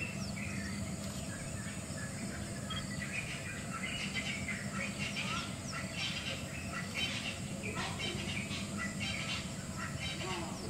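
Birds chirping and calling in many short quick notes, busier from about three seconds in, over a steady low hum.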